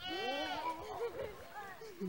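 A child's high, drawn-out squeal that rises and falls in pitch, followed by shorter cries near the end.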